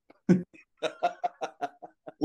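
Men laughing: one burst near the start, then a run of short, quick laughs.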